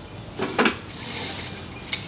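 Two quick clattering knocks about half a second in, from work being handled at an industrial sewing machine, then a steady background noise with a single click near the end.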